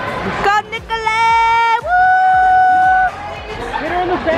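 Voices and crowd noise over background music, with two long held vocal notes: a shorter lower one about a second in, then a higher one held for about a second.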